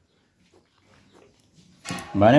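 Faint scratching of a ballpoint pen on paper as an answer is double-underlined, over quiet room tone, with a short sharp sound just before the end.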